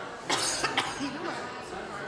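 A person coughs, a quick burst of two or three coughs about a third of a second in, over the steady murmur of an audience talking in a hall.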